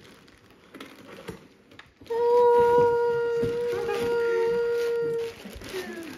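Faint rustling of paper and plastic packaging as a gift is unwrapped, then about two seconds in a single loud note, steady in pitch, is held for about three seconds and cuts off.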